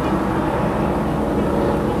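Go-fast powerboat running at high speed across the water, a steady, unbroken engine drone.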